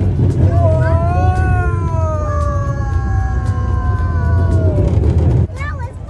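Low rumble of a small family roller coaster train running, with wind on the microphone, dropping off sharply near the end. Over it, a child's long drawn-out cry slides slowly down in pitch.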